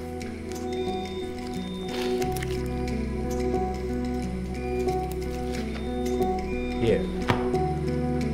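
Dramatic background music: sustained held tones over a pulsing low bass that deepens about two seconds in. Wet squelching from the surgery sits under the music, with a couple of sharp clicks near the end.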